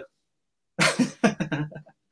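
A short, noisy vocal burst from a person, broken into several quick pulses and lasting about a second, starting nearly a second in after a moment of quiet.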